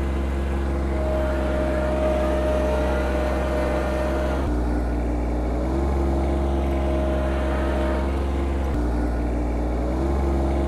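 Small garden tractor engine running steadily while pulling a double plow, with a thin whine over the engine note. The engine note shifts abruptly about halfway through and again near the end.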